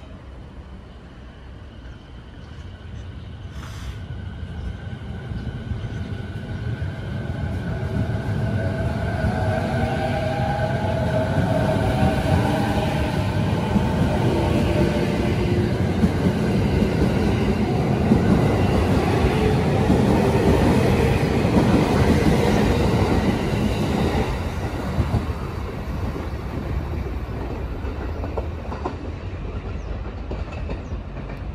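JR 209 series electric train departing: its traction motors whine upward in pitch as it accelerates, and the running noise of the passing cars grows loud, then eases off near the end as the last cars go by.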